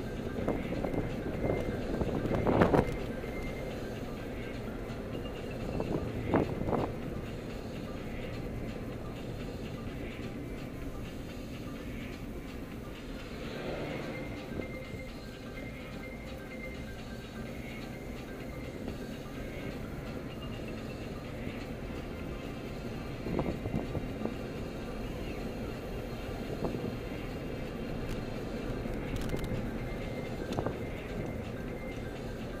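Steady engine and road noise inside a moving car, with music playing in the cabin and a few brief louder bursts about two, six and twenty-three seconds in.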